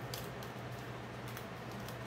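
Paper backing of fusible web crackling and crinkling as it is peeled and handled, with a few light scattered clicks over a low steady hum.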